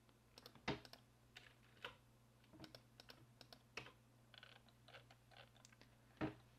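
Faint, irregular clicks and taps of a computer keyboard and mouse over a low steady hum, one click louder than the rest about a second in.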